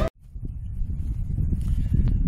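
Wind buffeting the microphone, an uneven low rumble that rises and falls, starting just after background music cuts off at the very beginning.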